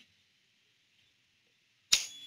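Near silence, then one sharp click near the end.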